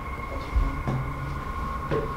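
Footsteps starting up a wooden staircase: a few dull low thuds, about three in two seconds, over a steady high-pitched electronic whine.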